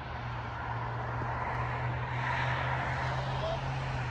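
Distant vehicle noise: a broad rushing sound that swells about two seconds in, over a steady low hum.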